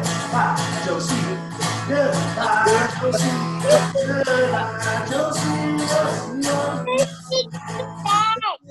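Hollow-body archtop guitar strummed in a steady rhythm, about two strums a second, with voices singing a children's goodbye song over it.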